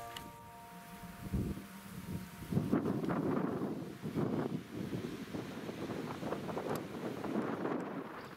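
Wind buffeting the microphone in uneven gusts. Background music fades out in the first second.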